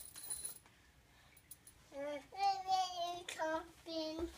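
A young child's high-pitched sing-song vocalizing, a few drawn-out, wavering notes without words, starting about halfway through.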